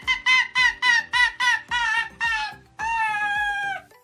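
Arctic fox cackling: a quick run of short, high calls, about four a second, then one longer call that falls slightly in pitch near the end.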